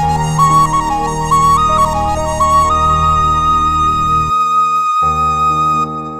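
Instrumental background music: a flute-like melody stepping up and down, then holding one long high note from about halfway through, over a low sustained drone that drops out briefly near the end.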